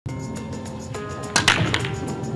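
A pool break shot in 9-ball: a sharp crack as the cue ball hits the rack about one and a half seconds in, followed by a quick clatter of balls knocking together as they scatter, over background music.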